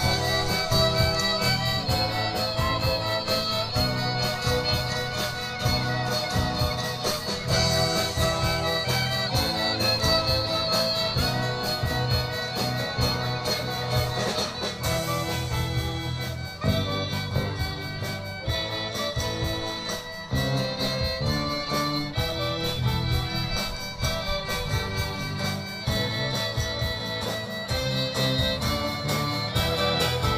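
A live rock band with a string section plays through stage speakers: bowed violins and cello over acoustic and electric guitars and drums, sustained string lines over a steady low beat.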